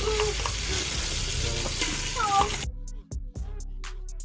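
Melting ghee sizzling and bubbling in a large aluminium pot, a steady hiss that cuts off suddenly about two-thirds of the way in, giving way to background music with sharp beats.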